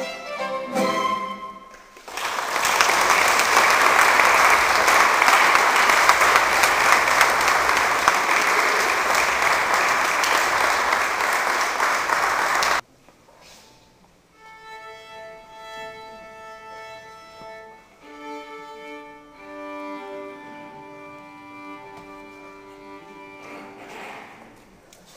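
The last notes of a violin and classical guitar duo, then audience applause for about ten seconds that cuts off abruptly. After that the violin plays quiet sustained open-string fifths while it is tuned between pieces.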